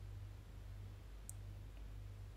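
Quiet room tone with a steady low hum, and a single faint, short high-pitched click a little over a second in.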